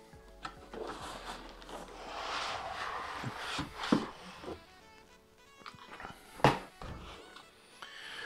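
Cardboard box and white foam packing being handled as a laptop in foam end-caps is lifted out. Cardboard rustles and scrapes, foam rubs and squeaks, and there is a sharp knock near the middle and a louder one later.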